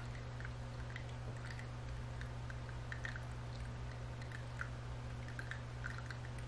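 Quiet room tone: a steady low hum, with faint small clicks scattered through it.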